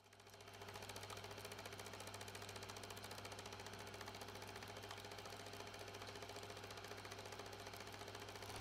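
Film projector running: a faint, rapid, steady mechanical clatter over a low hum.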